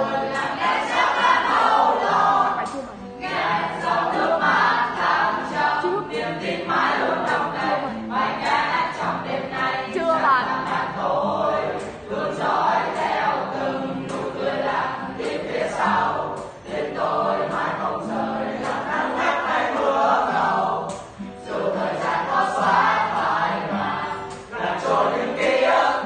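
A large group of young voices singing together, in phrases of a few seconds with short breaks between lines.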